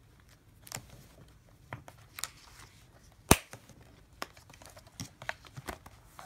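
Paper planner inserts rustling as they are handled on a six-ring binder, with scattered light clicks and one sharp, loud click about three seconds in as the metal rings snap shut.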